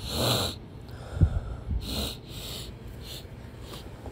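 A person breathing heavily close to the microphone: several short, hissy breaths, with a low thump about a second in.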